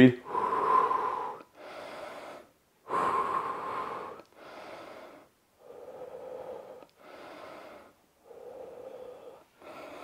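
A man breathing deeply and audibly to recover after a set of burpees: about four slow in-and-out breaths, each about a second long, the first two loudest and the rest softer.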